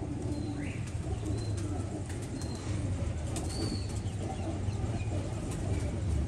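Domestic pigeons cooing in a loft over a steady low hum.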